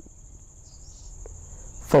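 Steady high-pitched whine over a low hum, the recording's background noise heard in a pause between spoken sentences.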